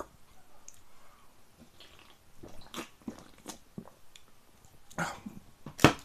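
A person chewing food quietly, with scattered soft mouth clicks and a single sharp click just before the end.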